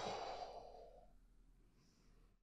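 A man sighs softly into a close microphone in the first half-second, then near silence.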